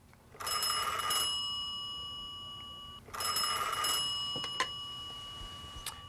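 Telephone bell ringing twice, each ring a rattle that rings on and slowly fades, with a few sharp clicks during the second ring.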